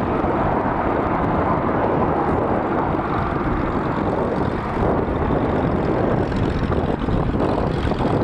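McDonnell Douglas MD-82's two rear-mounted Pratt & Whitney JT8D turbofans at takeoff power during liftoff and initial climb, a steady, loud, dense jet noise heavy in the low end.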